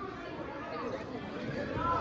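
Faint background chatter of several voices, with no clear words, in the lull between shouted instructions.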